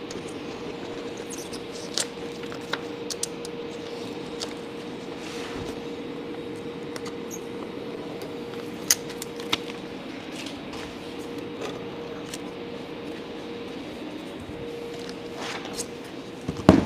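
Utility knife trimming excess vinyl film off the edge of a shelf: faint scattered clicks and scratches of the blade and handling, over a steady background hum.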